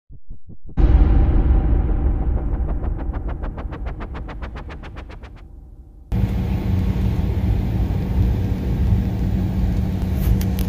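A loud swooshing intro sound that hits about a second in and fades away over the next few seconds. About six seconds in it cuts to the steady low engine rumble heard inside a jet airliner's cabin as it taxis.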